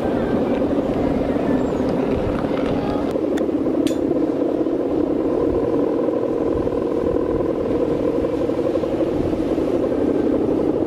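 Steady droning hum of Balinese kite hummers (guangan), taut bamboo bows vibrating in a strong wind, with a fainter higher tone joining about halfway through. Wind rumbles on the microphone underneath.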